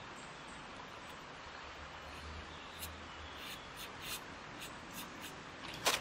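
Faint brush strokes of tempera paint on the painting surface, a soft scratchy rubbing. There are a few light ticks in the second half and a louder double click near the end.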